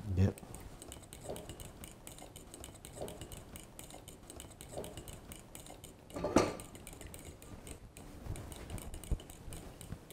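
A whisk beating yogurt and mango pulp in a bowl: a fast, steady run of light ticks and clinks.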